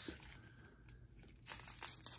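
Clear plastic zip-top bag of square diamond-painting drills being handled and squeezed, the thin plastic crinkling in a few short bursts starting about a second and a half in.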